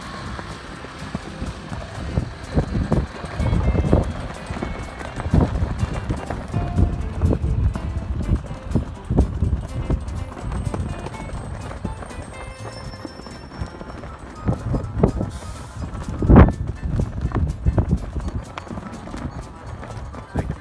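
Buffeting on the phone's microphone: irregular low thumps and rumbles throughout, the loudest about sixteen seconds in.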